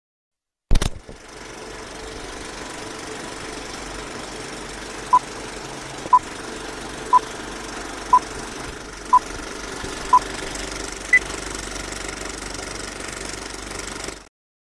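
Film projector sound effect running with a steady mechanical clatter and hiss after a sharp click as it starts. Over it, a film countdown leader beeps once a second, six short beeps at one pitch, then a single higher beep.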